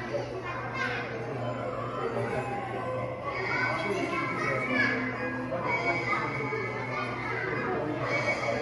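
Many children's voices chattering and calling out at once in a large, echoing room, with music underneath and a steady low hum.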